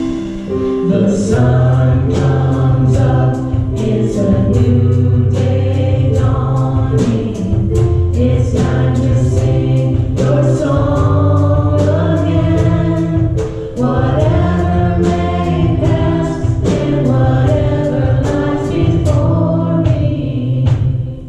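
Live worship music: women singing into microphones over a band of keyboard and drums, with sustained low bass notes and a steady drum beat.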